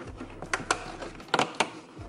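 Cardboard advent calendar door being pressed and torn open along its perforations, giving a few sharp clicks in two close pairs.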